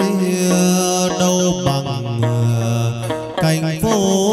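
Live chầu văn ritual music: a đàn nguyệt moon lute plucking, with a singer holding long notes over it.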